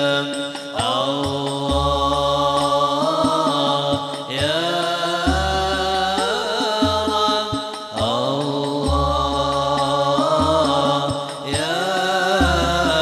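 Banjari devotional singing: a male lead voice sings long, ornamented phrases, each opening with a rising slide, about every four seconds. Rebana frame drums accompany him with deep, repeated bass strokes.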